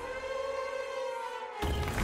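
Gold Volcano slot game's synthesized sound: a held chord of several steady tones, sagging slightly in pitch, as an extra free spin is awarded. About one and a half seconds in it cuts off and a low, louder rumbling music bed starts as the next spin begins.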